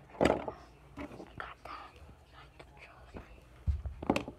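Fabric rubbing and brushing over a phone's microphone: a loud rustle just after the start, then soft scattered rustles and a low thump near the end.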